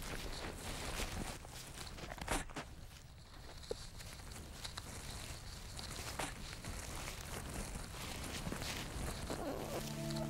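Scratching and rustling of dry leaves, sticks and roots as a platypus shifts its nesting material, with irregular small crackles and one sharper crackle about two and a half seconds in.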